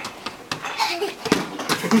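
A young child's voice and a short laugh near the end, with a few light knocks.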